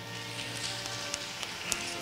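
Soft sustained keyboard chords holding under the close of the sermon, with three light, sharp knocks in the second half.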